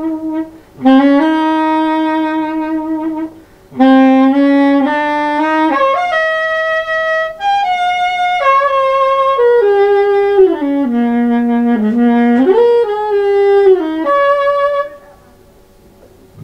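Solo soprano saxophone improvising: a held note, then a long note that scoops up into pitch, and after a short gap a phrase of notes stepping downward and climbing back up. This is the closing phrase of the piece, and the playing stops about a second before the end.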